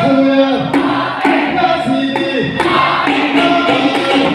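A Moroccan Ghiwani-style song played live: a group of voices sings in unison, holding long notes that glide between pitches, over scattered hand-drum strokes.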